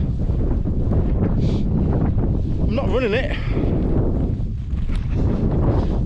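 Wind buffeting the microphone: a steady low rumble throughout, with a brief vocal sound from the runner about three seconds in.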